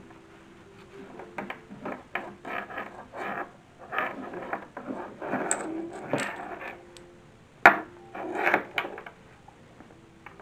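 Cotton fabric rustling and the porcelain doll's hard limbs clicking and knocking against the cutting mat while cotton drawers are pulled onto the doll and tied. The noises come irregularly, with one sharp click a little past two-thirds of the way in.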